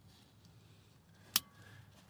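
Small tongue of a roof-mounted center seat belt latching into its anchor buckle: a single sharp click a little over a second in.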